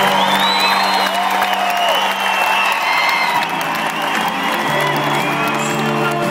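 Live country band playing at a concert, recorded from amid the audience, with the crowd cheering and whooping over the music.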